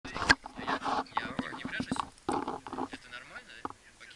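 A single sharp knock right at the start, then people talking indistinctly for about three seconds.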